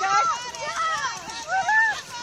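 Voices of spectators talking and calling out outdoors, with no single voice clear.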